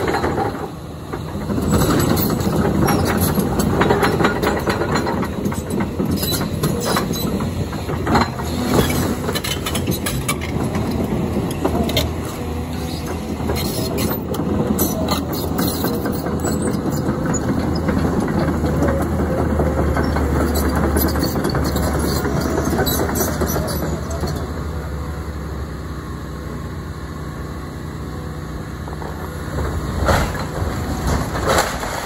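Caterpillar 323 excavator's diesel engine running steadily, with dense clanking and rattling from its steel tracks and debris as the machine travels and works through the first half. The engine note then deepens and grows heavier for a few seconds, under load, before easing off near the end.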